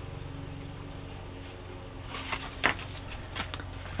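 Cardstock paper tags being handled and shuffled by hand: a few short paper rustles and light taps about two seconds in and again near the end, over a steady low hum.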